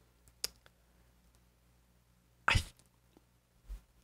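A pause with near silence, broken by a faint mouth click near the start and a short, sharp breath noise from a person about two and a half seconds in, then a soft low bump near the end.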